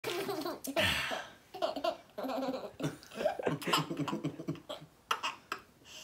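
A woman laughing in repeated short bursts, with a word spoken among the laughs.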